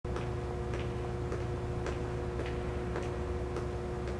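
Evenly paced ticking, a little under two ticks a second, over a low steady hum and a few held tones.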